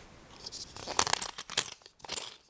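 Hand-twisted Alessi grinder crunching pepper: a rapid, irregular crackle of small clicks that starts about half a second in and stops just before the end.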